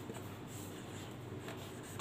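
A marker pen writing on a whiteboard: faint strokes of the tip on the board.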